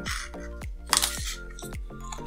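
Background music with a steady beat, and a short crinkle of a small plastic zip bag being picked up and handled about a second in.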